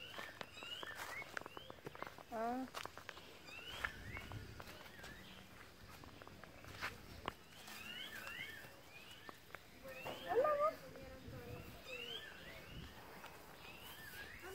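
A small puppy whimpering and whining again and again in short high glides, with one louder whine about two and a half seconds in and a louder cry near ten and a half seconds. Soft footsteps on a dirt yard are heard under it.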